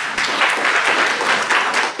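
Audience applauding: many people clapping at once, a dense, steady clatter of hands.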